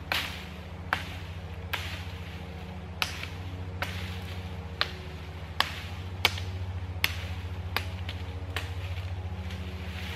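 Sharp, swishing chopping strokes, about one a second and a dozen in all, as the side branches are lopped off a freshly cut sapling pole to clean it up. A steady low hum runs underneath.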